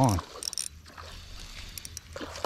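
KastKing spinning reel being cranked to reel in a hooked bass, giving a few light metallic clicks.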